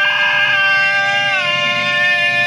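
Sustained electronic drone of several held pitched tones from tabletop effects gear. The whole chord slides down in pitch about one and a half seconds in, then holds again.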